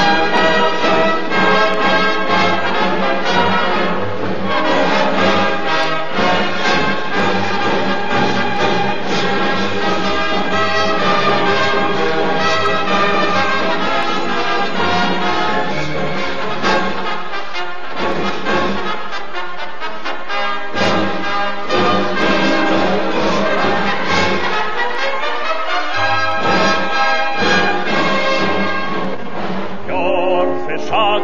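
Instrumental break of a march-style song played by brass and orchestra, with no singing. The low bass drops out briefly twice in the second half.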